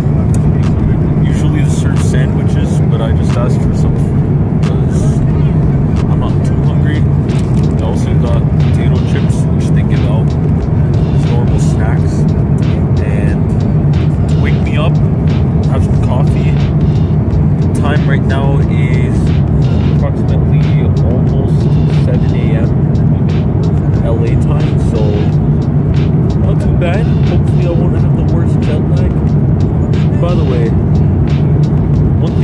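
Steady low cabin noise of a jet airliner in cruise, an unbroken rumble with no change in level. A man's voice talks over it.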